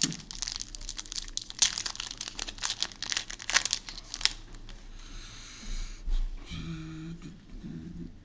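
Foil wrapper of a Yu-Gi-Oh trading-card booster pack crinkling and crackling as it is torn open by hand. It is dense and busy for the first four seconds or so, then dies down to softer handling of the wrapper and cards.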